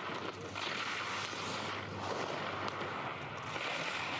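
Giant slalom skis carving down the race course: a steady scraping hiss of ski edges on the snow.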